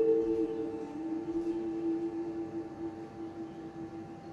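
Soft ambient background music: a held synthesizer-like drone that steps down in pitch just after the start and slowly fades, played through a television's speaker.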